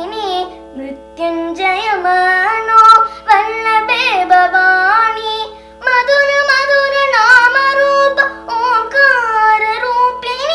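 A girl singing a Hindu devotional bhajan in long, gliding sustained phrases with brief breaths between, over a steady drone from an electronic shruti box.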